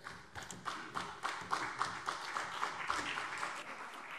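Applause after a speech: a modest number of people clapping, with the claps thinning out near the end.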